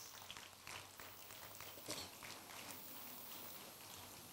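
Faint, scattered hand-clapping over a low hiss, heard as irregular small claps with one slightly louder clap about two seconds in.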